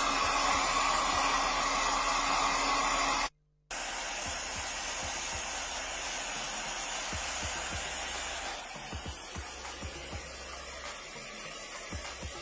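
Hand-held hair dryer blowing steadily, warm air on a frozen goose's wet feathers to thaw it. The sound breaks off abruptly about three seconds in, then a quieter steady blowing hiss carries on and drops lower after about nine seconds.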